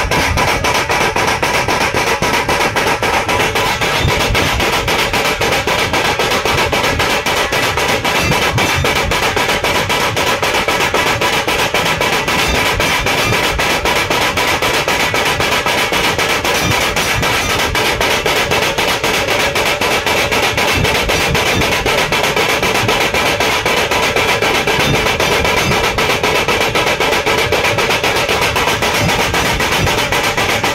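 A troupe of big two-headed dhol drums beating loudly and continuously in a fast, dense, even rhythm.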